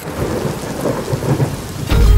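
Thunderstorm: steady rain with a low rumble of thunder.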